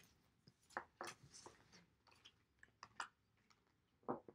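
Faint, scattered soft clicks and rustles of a deck of oracle cards being shuffled by hand.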